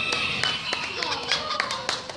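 Sharp claps, several a second and unevenly spaced, over people talking.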